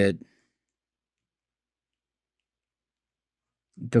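Near silence: a spoken word at the start, about three and a half seconds of dead quiet with no audible sound, then speech resumes near the end.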